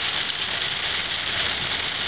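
Heavy rain hitting the car's windshield and roof, mixed with wet-road tyre noise, heard from inside the cabin as a steady hiss over a low rumble.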